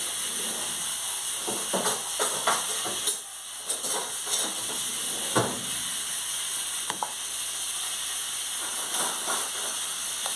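Steady sizzling hiss from a pan on the stove, with scattered knocks and clinks of kitchen utensils and dishes being handled.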